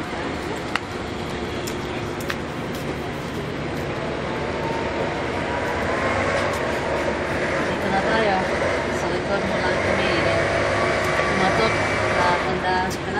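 People's voices talking, over a steady background hiss and rumble that grows a little louder partway through.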